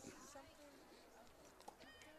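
Near silence: faint outdoor ballpark ambience between commentary lines, with a faint tick near the end.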